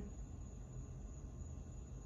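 Quiet room tone: a steady low hum and faint hiss with no distinct sound.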